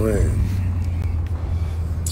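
Steady low rumble of a car heard from inside the cabin through a phone's microphone, with a man's voice trailing off at the very start.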